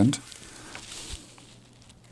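The last word of a man's speech, then soft rustling and crackling of a paper instruction booklet being handled and held up, over a faint steady low hum.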